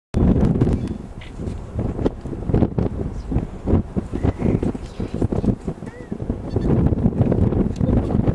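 Wind buffeting the camera microphone in uneven gusts, with indistinct voices of people in the background.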